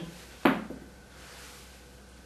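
A table tennis ball dropping after a missed serve: one sharp tap about half a second in and a fainter one just after as it bounces, then quiet room tone.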